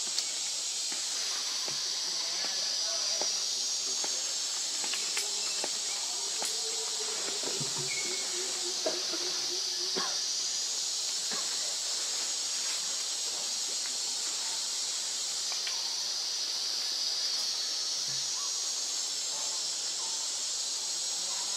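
A steady, high-pitched chorus of forest insects, its pitch band shifting up and down a few times, with faint scattered ticks and faint distant voices underneath.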